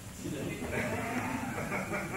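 A person's voice making one drawn-out vocal sound, lasting about a second and a half.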